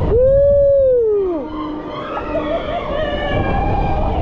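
A rider's long cry on a swinging gondola ride, held and then falling in pitch, ending about a second and a half in, over steady wind rush on the microphone. Fainter wavering cries follow.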